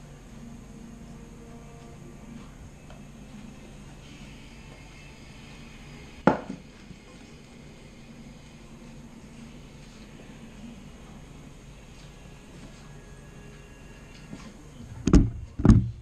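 Two heavy thumps close together near the end as a puppy knocks into the camera, after a single sharp knock about six seconds in, with a faint low steady hum underneath.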